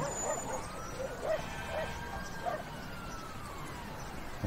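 A faint distant siren: one slow wail that rises and then falls, with a few soft short sounds beneath it.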